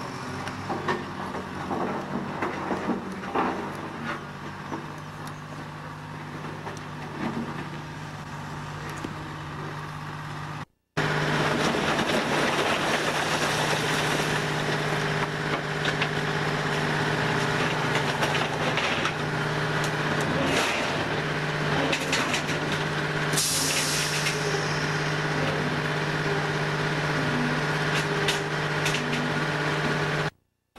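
Heavy diesel machinery running: a crawler bulldozer's engine hums steadily as it pushes rubble, with scattered knocks. After a sudden cut, a dump truck's engine runs louder while its bed is raised to tip its load, with a brief hiss about two-thirds of the way through.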